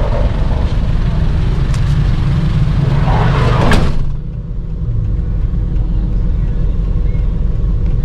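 A van's engine idling, heard inside the cabin as a steady low rumble, with street noise coming in through an open side. About four seconds in the street noise cuts off sharply, leaving only the muffled engine rumble.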